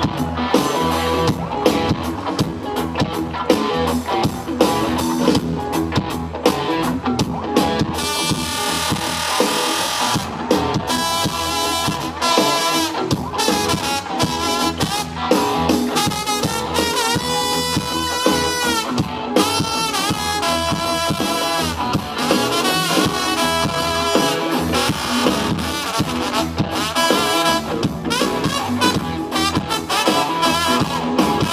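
Live rock band, with electric guitars and a drum kit, and a trombone soloing over it from about eight seconds in, its notes bending and sliding in pitch.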